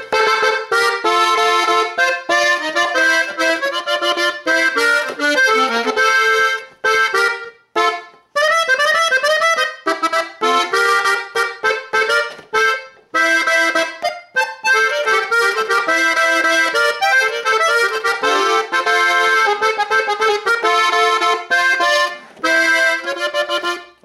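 Gabbanelli M101 diatonic button accordion in swing tuning, played live: a melody of quick notes over chords, broken by a few brief pauses.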